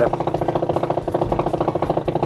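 Motorcycle engine running steadily with a rapid, even pulse, heard from the bike itself.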